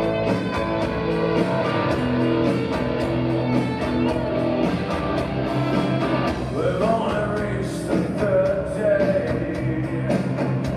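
A rock band playing live in a concert hall, with a steady beat. A male lead voice comes in singing about six and a half seconds in.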